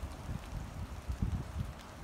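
Wind buffeting the microphone in uneven low rumbling gusts, strongest a little past the middle.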